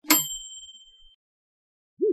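A single bright, bell-like ding: one sharp strike that rings on in a few high, clear tones and fades away within about a second.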